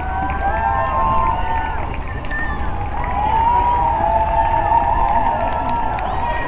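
Roadside crowd cheering and shouting for passing marathon runners, many voices calling at once and growing louder about halfway through, over a steady low rumble.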